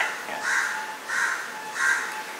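A bird calling: three short calls about two-thirds of a second apart.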